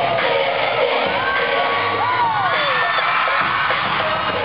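Live K-pop dance music over a concert sound system, heard from the audience, with fans screaming and cheering over it. High screams rise and fall about one to three seconds in.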